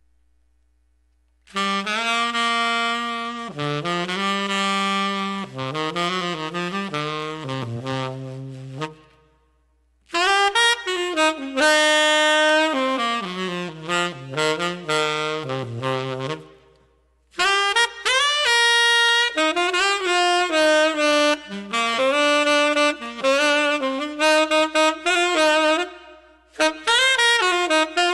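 Tenor saxophone played solo, its reed held by a screwless elastic-band ligature, in melodic phrases broken by short breaths. It comes in about a second and a half in and ranges from low notes up into the upper register.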